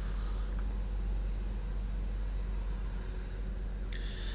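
Steady low hum inside the cabin of a 2016 Jeep Grand Cherokee with its six-cylinder engine idling.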